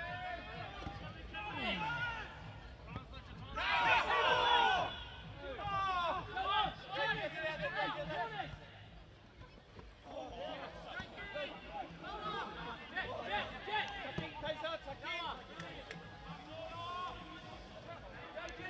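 Voices calling out across a football pitch during play, unclear and at a distance, with one loud burst of calling about four seconds in.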